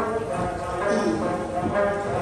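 An ensemble of dranyen (Tibetan long-necked lutes) strummed together in a steady rhythm, with young voices singing a Tibetan song over it.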